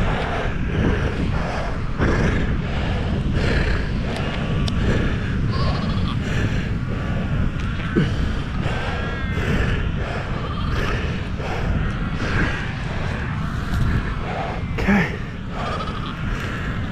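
Cape fur seals calling, with a few pitched calls about halfway through and near the end, over a steady low rumble of wind on the microphone.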